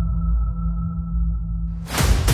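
Suspense music: a sustained low drone with a few steady held tones, ending in a rising whoosh near the end.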